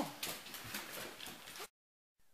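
Dogs' claws clicking on a hardwood floor as they walk about, a quick irregular run of taps. The sound cuts off abruptly near the end.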